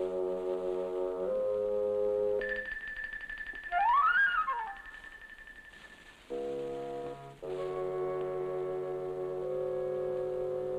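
Suspense film score: low, held wind-and-brass chords, then a high sustained tone about two and a half seconds in with an eerie pitch glide rising and falling near four seconds, the loudest moment. Held chords return after a brief quieter dip.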